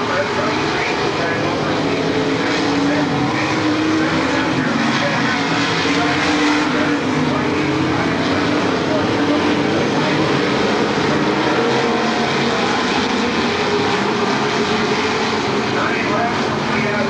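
Dirt modified race cars racing on a dirt oval, their V8 engines running together in a loud, continuous drone whose pitch rises and falls as the cars accelerate and pass.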